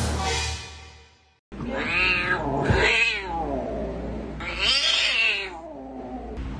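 Domestic cat meowing: three long meows, each rising and then falling in pitch, about two, three and five seconds in. A brief sound fades out over the first second and a half.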